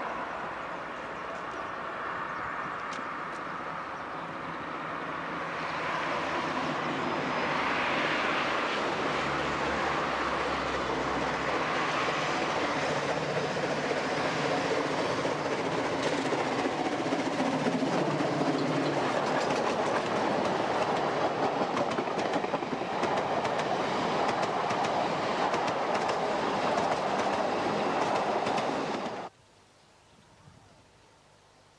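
Narrow-gauge steam train, double-headed by two steam locomotives, running past at close range with steam exhaust and running-gear noise. It grows louder about six seconds in, with rapid clicking over the rails, and cuts off suddenly near the end.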